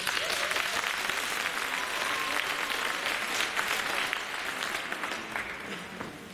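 Audience applauding, starting suddenly and dying away near the end.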